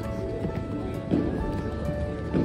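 Background music with steady held notes, and a short thump about halfway through.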